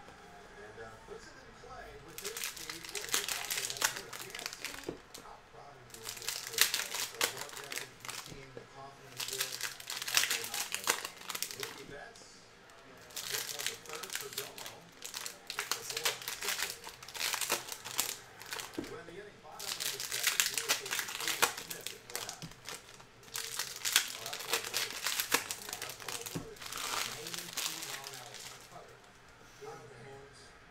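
Foil trading-card pack wrappers being torn open and crinkled in hand, one pack after another, in about nine crinkling bursts of two to three seconds each, roughly every three seconds.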